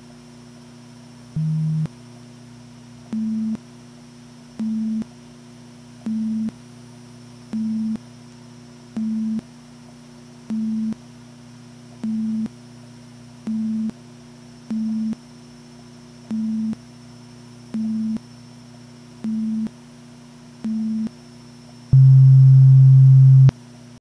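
Electronic sine-tone beeps over a steady low hum: one lower beep, then about thirteen slightly higher beeps at an even pace, roughly one every second and a half. Near the end a long, louder, lower tone sounds for about a second and a half, then cuts off.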